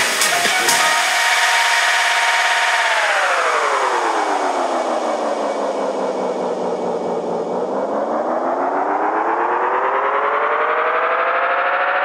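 House music whose drum beat drops out about a second in, leaving a sustained synthesizer chord that glides down in pitch, then back up again and holds.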